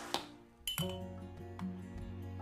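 Two light clinks of a metal teaspoon against a glass container, the second with a short ring, over background music.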